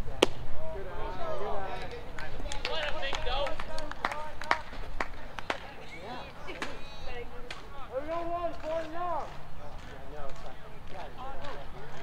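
A single sharp crack as the baseball pitch reaches home plate, just after the start. Several people's voices then call out over the field, with scattered claps.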